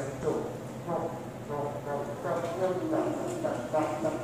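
Indistinct talking, with voices running on and off and no clear words.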